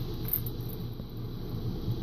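Steady low background hum with a faint hiss: room tone with no distinct event.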